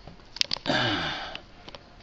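A person's breathy exhale, a sigh with a little voice in it that falls in pitch, lasting under a second, with a few light handling clicks just before it.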